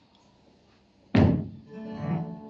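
One loud thump a little over a second in, dying away within half a second, followed near the end by a guitar starting to play a chord.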